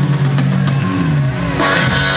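Live band music with guitars, a low note sliding down in pitch about a second in.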